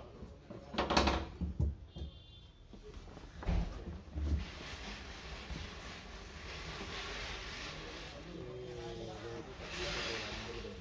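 Handling noises from fitting a headliner inside a car cabin: a few knocks and thumps against the body in the first half, then a steady rustling hiss as the fabric is pressed and worked along the roof edge.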